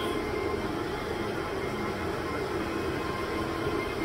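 Steady whirring drone of the cell site equipment shelter's cooling fans and air conditioning, with a faint steady whine over it.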